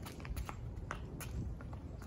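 Quick, light footsteps and scuffs of a child's sneakers on a concrete driveway during a footwork drill around cones, a few separate taps over a low background rumble.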